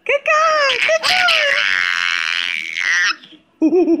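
An infant's high-pitched vocalising: a few short gliding coos, then a drawn-out shrill squeal of about a second and a half that stops about three seconds in, followed by the start of a loud, gleeful 'oooh' near the end.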